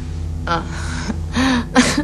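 A woman's short 'oh', then breathy, gasping laughter.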